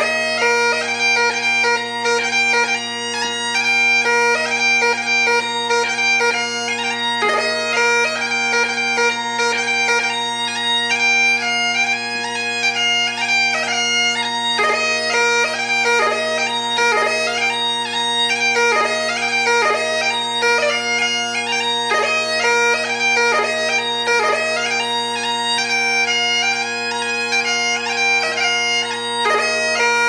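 Bagpipes playing a tune over steady drones: a continuous chanter melody with quick ornamental note flicks, never pausing.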